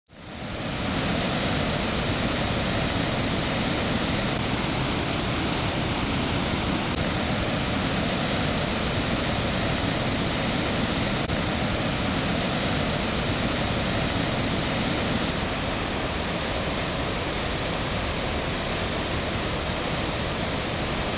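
Steady, even rushing noise that fades in over the first second and then holds at one level, with no rhythm or distinct events.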